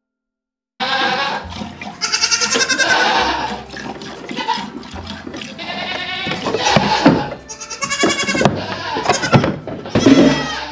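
Nigerian Dwarf goats bleating loudly in a barn: a series of long calls starting suddenly about a second in, after a moment of silence, with dull thumps between them.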